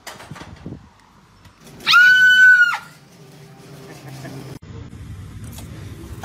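A person screams in fright at a jump scare: one loud, high-pitched scream held for about a second, starting about two seconds in.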